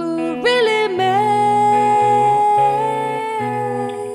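Live rock band music: a woman's voice slides up and then holds one long wordless note for about two and a half seconds, over electric guitar and bass.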